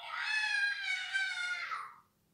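A high-pitched voice holding one long wailing cry for nearly two seconds, dipping slightly in pitch before it stops.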